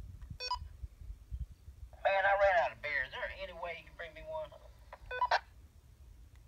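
Handheld two-way radio (walkie-talkie) giving short electronic beeps: one about half a second in and another near the end, each a brief stack of pure tones. An indistinct voice is heard between them.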